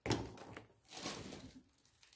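Unpacking noises: a knock as something is set down, then rustling and light clatter of parts being handled in a cardboard box, with a second burst about a second in.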